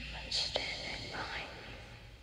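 A person whispering a few breathy words over a low, steady hum.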